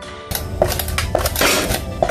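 Aged cheese being grated on the fine teeth of a plastic flat grater over a stainless steel tray: rasping strokes, about two a second, starting shortly after the start. Quiet background music underneath.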